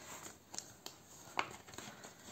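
Faint handling noise of a clear plastic cash envelope and ring binder: light rustles with a few small clicks, the sharpest about a second and a half in.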